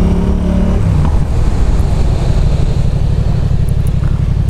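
Yamaha XSR 700's parallel-twin engine under way, pulling at steady revs, then dropping to lower, pulsing revs about a second in.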